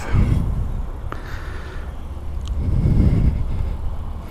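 Road traffic from cars close by: a steady low rumble, swelling about three seconds in as a vehicle goes past.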